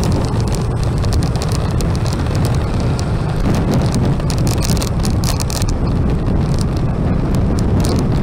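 Wind rushing over the camera microphone on a moving motorbike, with a steady low rumble of engine and road noise underneath and some crackle from the wind.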